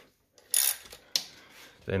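Metal-on-metal clinks from a ratchet spanner working on an intercooler bolt as it is cracked loose: a sharp clink about half a second in and a second click just after a second.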